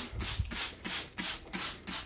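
Hand-held plastic trigger spray bottle squirting vinegar onto a cage shelf tray: a quick run of short hissing sprays, about four a second.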